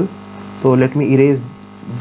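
A steady electrical mains hum runs under the recording. About halfway through, a man's voice makes a short drawn-out vocal sound.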